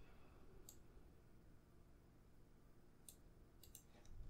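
Near silence: faint room tone with a few small, sharp clicks, one just under a second in and three in quick succession near the end.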